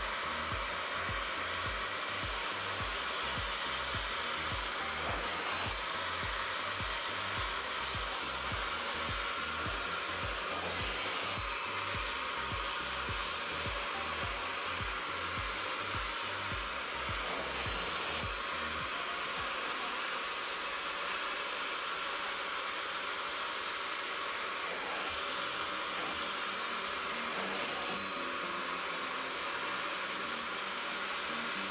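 Portable carpet extractor (Bissell SpotClean) running with a steady whine as its clear hand-tool nozzle is drawn over automotive carpet, sucking up the cleaning solution. A low rhythmic pulsing underneath stops a little past halfway.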